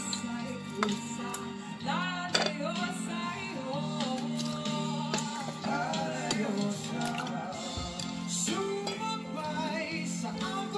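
Background music with a singing voice over it.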